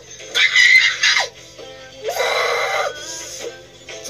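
A girl screams twice: a short outburst near the start and a longer held scream about two seconds in. Background music plays under both.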